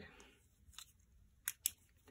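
A small UV flashlight's push switch clicking: a faint tick, then two sharp clicks in quick succession about one and a half seconds in as the blacklight is switched on.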